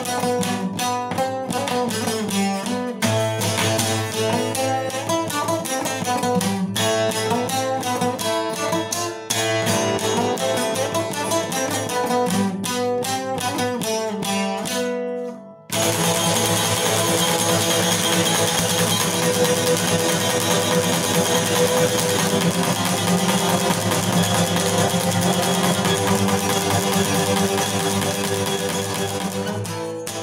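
Cretan lute played with a plectrum in a black-metal style: a picked melody of separate notes over a steady low drone for the first half. After a brief break about halfway, it turns into fast, continuous tremolo picking, a dense sustained wash that starts to fade near the end.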